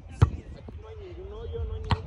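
A football kicked twice on a grass pitch: two sharp thumps about a second and a half apart, with faint voices in the background.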